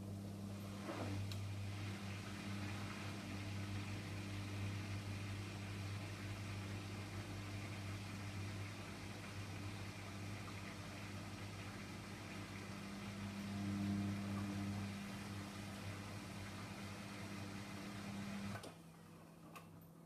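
Beko WME8227W washing machine's drain pump humming steadily as it pumps out the water, swelling briefly with a gurgle about two-thirds of the way through, then cutting off suddenly near the end.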